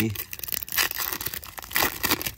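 The foil wrapper of a 2024 Topps Series 1 baseball card pack being torn open by hand. It is a crackling rip with crinkling of the wrapper, loudest about a second in and again near the end.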